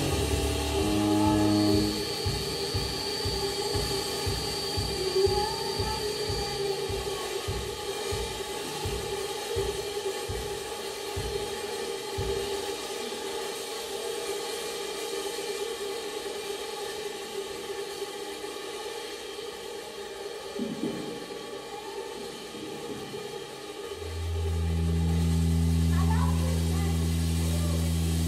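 Live synthesizer-driven band music. Held synth chords give way to a quieter passage: a low pulse at about two beats a second fades away under a steady drone, with a thin high tone for a few seconds. A loud, deep synth bass chord comes in near the end.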